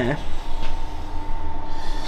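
Steady low rumble with a faint continuous high whine: constant workshop background noise, no engine running.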